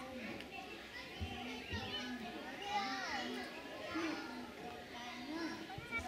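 Young children's voices chattering and calling out in short, high-pitched bursts while they play together.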